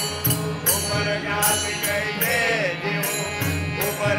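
Devotional bhajan singing: male voices chanting a melody over a sustained drone, with jingling metallic percussion keeping a steady beat about two to three strokes a second.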